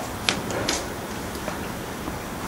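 Steady outdoor background hiss with a couple of faint, short clicks in the first second.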